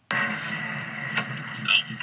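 Playback of a clip recorded inside a car: steady engine and road noise in the cabin starts abruptly, with the occupants' voices.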